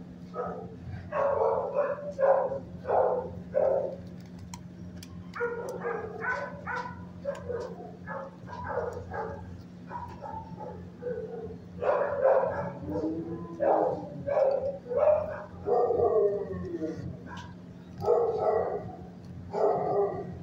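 Dog barking repeatedly in bouts of short barks, with a wavering, bending call about thirteen seconds in. A steady low hum runs underneath.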